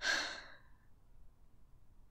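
A woman's sigh: one breathy exhale without voiced pitch that fades out within the first second, followed by near silence.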